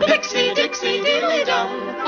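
Cartoon theme song: singing voices over a light instrumental backing.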